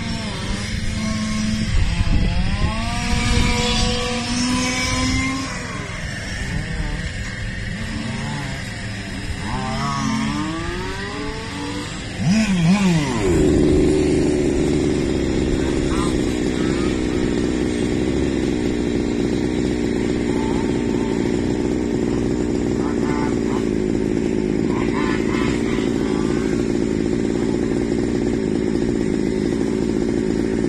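Small two-stroke petrol engine of a 1/5-scale RC touring car, choked by a 10 mm intake restrictor, revving up and down for the first dozen seconds, then idling steadily and loudly close by from about 13 seconds in.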